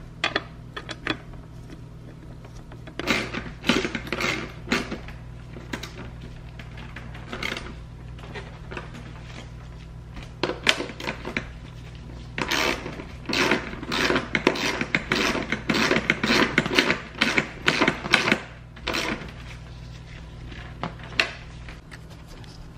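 Socket ratchet clicking in quick bursts, several spells of it, as the bolts holding the seat rails and the fire-extinguisher mounting bracket are tightened back in.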